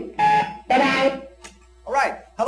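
A person's voice in two short phrases, with a brief rising sound near the end.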